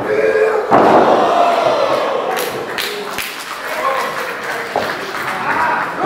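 A wrestler slammed onto the ring mat: one heavy thud about a second in, followed by the crowd shouting and yelling.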